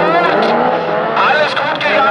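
Autocross cars' engines running and revving on the dirt track, with a voice talking over them.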